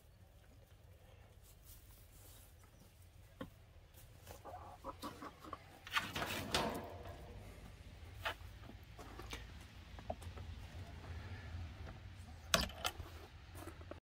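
Domestic hens clucking quietly, with a few short clicks and knocks over a low steady rumble; the busiest, loudest stretch comes about six seconds in.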